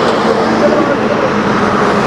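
Highway traffic, cars and trucks passing close by, a steady loud rush of engine and tyre noise.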